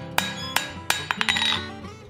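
Hammer blows on a 3/8-inch square steel bar on the anvil, knocking down its corners: three sharp ringing strikes about a third of a second apart, then a couple of lighter taps. Background guitar music plays underneath.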